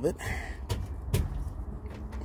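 Two sharp knocks about half a second apart, from hand tools striking metal under a car where a mechanic is taking the rear axle off.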